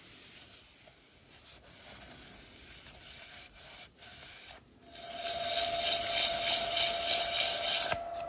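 A cloth rubbing by hand over a turned oak and beech bowl standing still on the lathe, in short strokes with brief pauses. About five seconds in, the lathe starts, bringing a steady motor whine and a much louder rushing rub against the spinning wood.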